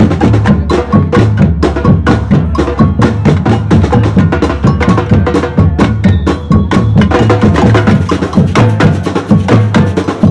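Street drum troupe playing a fast, steady rhythm on slung drums of several sizes: quick, sharp stick strikes over a deep, regular drum pulse.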